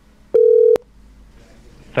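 A single short buzzy telephone-line beep, under half a second, with a click as it starts and stops: the tone of the phone call dropping.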